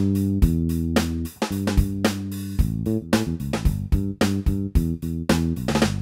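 Drum and bass backing generated by a Digitech Trio Band Creator pedal, playing an R&B-style groove: steady drum hits two to three a second over a bass line, with the pattern changing about halfway through as the style is switched.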